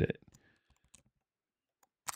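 A spoken word ends, then near silence broken by two faint, short clicks, one about a second in and one just before the end.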